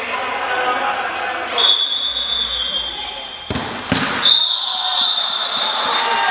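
A sports whistle blown twice, steady and shrill: a blast of about a second, then a longer one of nearly two seconds, with two sharp thuds between them. Players' voices carry in the echoing sports hall underneath.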